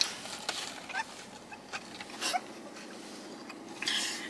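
A woman's stifled laughter behind her hand: a few short, faint squeaks and breathy bursts, with a slightly stronger one a little past the middle.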